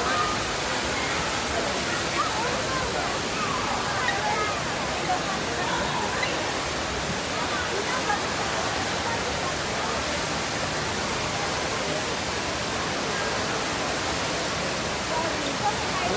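Steady rush of falling water from the Rain Vortex, the indoor waterfall at Jewel Changi Airport, with faint voices of people around it.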